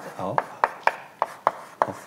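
Chalk writing on a blackboard: about six sharp taps of the chalk against the board, roughly three a second, as letters are written.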